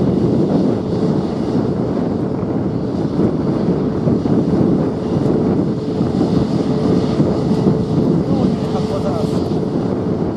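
Airbus A320neo's turbofan engines running as the airliner rolls slowly along the runway: a steady rumble with a faint steady tone.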